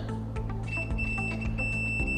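Digital multimeter on its continuity setting beeping: a steady high-pitched tone starts under a second in, with a couple of brief dropouts, as the probe completes the circuit through the pressure-switch wire. The beep shows the wire has continuity and is not damaged.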